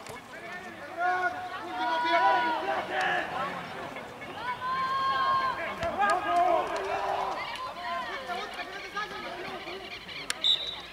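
Several voices shouting and calling out at once during open rugby play, the long held calls overlapping and loudest about two and six seconds in.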